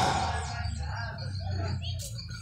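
A pause in amplified speech: the PA loudspeaker's steady low hum and the fading tail of the voice, with faint scattered background sounds.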